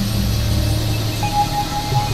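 Experimental electronic drone music: a steady low synthesizer drone under a noisy hiss, with a held higher tone coming in just over a second in.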